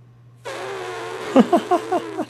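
A person blowing a raspberry through tightly pressed lips: a hiss that starts about half a second in, then breaks into a quick run of about six falling, squeaky, fart-like sputters.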